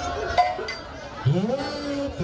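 Faint tail of music with a sharp click about half a second in, then a man's voice comes in just past a second with a long drawn-out syllable that rises and then holds.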